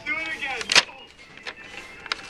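Folded paper card being opened by hand: a sharp crackle of stiff paper about three quarters of a second in, then a fainter crinkle.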